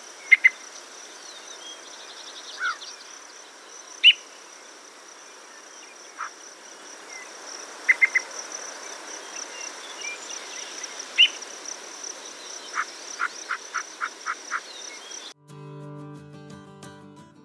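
Yellow-breasted chat calling: a series of scattered short notes and whistled glides, with a quick triple note about halfway and a run of about seven evenly spaced notes near the end, over a steady high insect drone. Just before the end the recording cuts off and guitar music begins.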